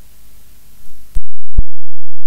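Steady hiss of an old live recording with no one speaking. About a second in, a sharp click and the sound cuts out, with a second click about half a second later: a glitch or edit in the recording.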